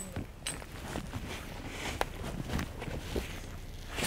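Footsteps on dry leaf litter in woodland, with a few sharp clicks.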